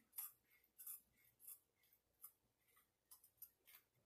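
Sharp scissors snipping through the edge of a diamond painting canvas, cutting between the rows of resin diamonds: a string of faint, short snips spaced irregularly.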